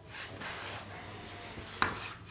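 Chalk scraping and rubbing on a blackboard for over a second, then one sharp tap against the board near the end.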